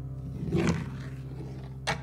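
Steel-string acoustic guitar played live, a chord ringing on, strummed again about half a second in and struck sharply once near the end.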